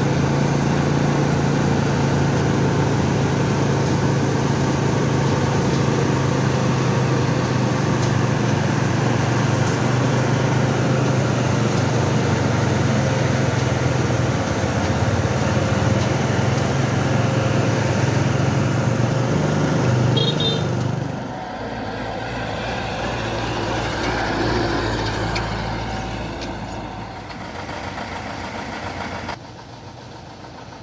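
Diesel engine of a brick-loaded Thaco dump truck running as it drives slowly, a loud steady low hum. About 21 seconds in the hum drops and the sound becomes quieter.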